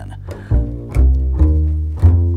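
Upright double bass played pizzicato: a low note rings, then three more notes are plucked about half a second apart.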